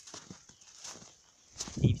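Boots stepping through fresh snow, a few soft irregular crunches, with a loud low bump on the microphone near the end.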